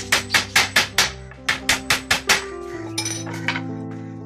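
Hammer driving nails into the wooden planks of a cage frame: a quick run of sharp blows, about five a second, a short pause, then a second run, with a few lighter taps near the end.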